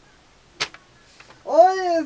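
A single sharp click about half a second in, then a voice starting a held sung note about a second later, the loudest sound here, as a take of a vocal cover begins.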